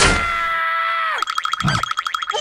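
A cartoon caterpillar's long, loud held cry that drops in pitch as it ends, followed about a second in by a fast warbling cartoon sound effect.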